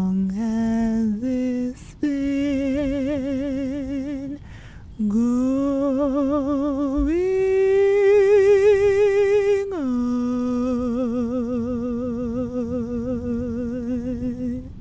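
A solo unaccompanied voice singing a string of long held notes with vibrato: climbing step by step through the first few seconds, rising to a long high note in the middle, then dropping to a lower note held to the end.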